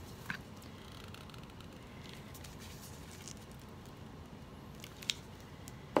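Quiet room tone with a few faint, short clicks and taps from handling a paint cup and supplies on the work table.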